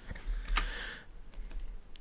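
Computer keyboard and mouse clicks: a sharp key click about half a second in and another near the end.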